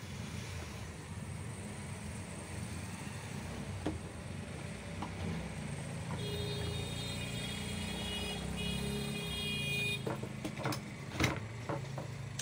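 A steady low engine-like rumble runs throughout. A sustained high, horn-like tone sounds from about six to ten seconds in. Near the end come a few sharp clicks and knocks as the router's metal base plate and motor body are handled.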